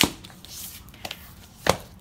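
A hardcover picture book handled on a tabletop: three sharp knocks as it is turned over and set down face up, the first the loudest.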